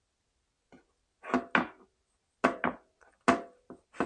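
Large kitchen knife cutting through beef ribs on a bamboo cutting board: a series of short, sharp knocks as the blade strikes the board, mostly in pairs about a second apart.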